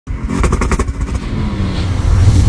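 A motor vehicle engine revving, with a fast run of exhaust pulses in the first second, then a steady low rumble.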